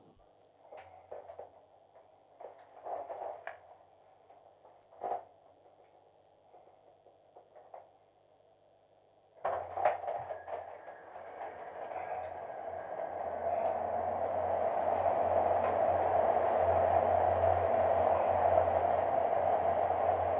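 Man-rated human centrifuge spinning up for a 4.4 G run. After several seconds of near quiet with a few faint clicks, the run starts suddenly about halfway through. A steady noise with a low hum then builds, growing louder as the arm gathers speed toward about 4.3 G.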